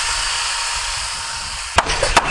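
Outdoor construction-site background: a steady hiss with a low rumble, then a sharp knock near the end, like a hammer striking wood.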